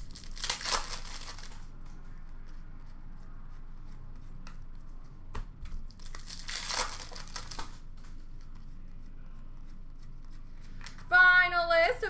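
Plastic hockey card pack wrappers being torn open and crinkled by hand, in two short bursts: one just after the start and another about six to seven seconds in.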